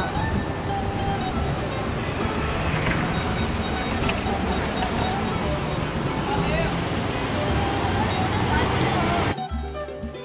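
Busy street ambience: a steady wash of traffic noise with people talking. About nine and a half seconds in it cuts off abruptly and background music takes over.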